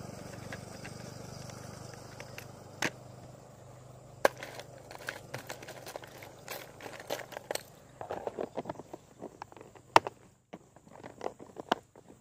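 Hard plastic fishing lures and hooks clicking and rattling in a clear plastic tackle box as hands rummage through it: irregular sharp clicks that grow thicker in the second half, the sharpest one about two seconds before the end.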